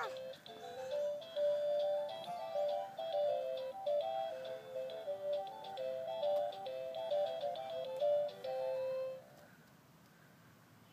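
Electronic tune from the speaker of a Fisher-Price ride-on toy car: a simple melody of short stepped notes, ending on a longer held note and stopping about nine seconds in.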